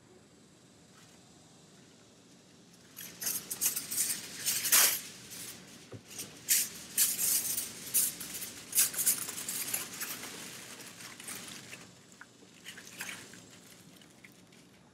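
Aluminum foil crinkling and rustling in irregular crackles as it is pulled from the roll and crumpled around a wiper arm, starting about three seconds in and dying away near the end.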